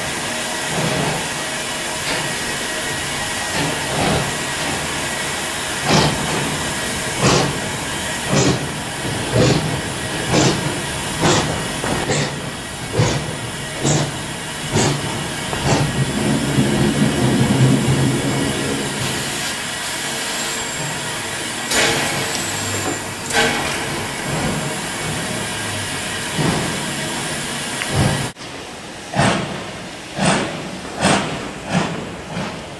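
FS steam locomotive working slowly: a steady hiss of escaping steam, with sharp exhaust beats about once a second. Near the end the hiss drops away and only the beats remain.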